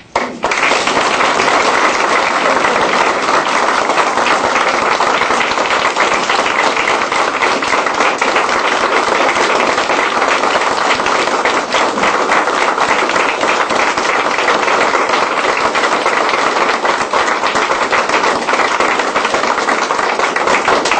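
Audience applauding, a loud sustained round of clapping that starts about half a second in and holds steady.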